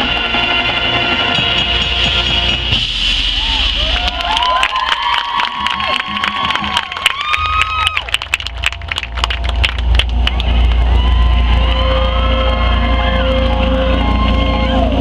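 A marching band holds a loud sustained chord that breaks off about three seconds in; the crowd then cheers and shouts with scattered clapping for several seconds. Near the end a low, steady bass and soft held tones from the front ensemble come in.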